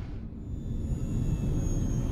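Steady low rumble of Viper starfighter engines, a science-fiction sound effect, with a faint thin high tone above it.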